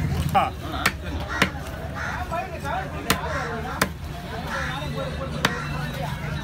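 A long knife chopping through yellowfin trevally on a wooden block: about six sharp chops at uneven intervals, with voices in the background.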